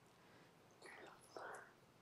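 Near silence, broken by two brief, faint, breathy whisper-like sounds about a second in.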